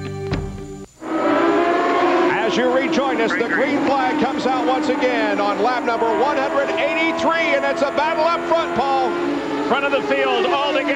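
The tail of a commercial's music cuts off about a second in. After it come IRL Indy cars' 3.5-litre V8 engines running at racing speed on the restart, several engines at once, their pitch dipping and rising as the cars pass.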